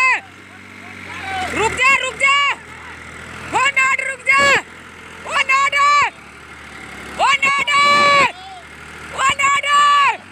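Men shouting long, high, wordless calls, five bouts about two seconds apart, each rising at the start and dropping off at the end, over a diesel tractor engine running steadily.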